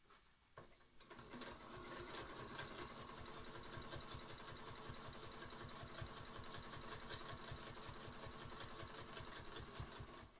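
High-shank domestic sewing machine stitching a quilted line. It starts about a second in, runs at an even speed with rapid regular needle strokes over a motor hum, and stops near the end.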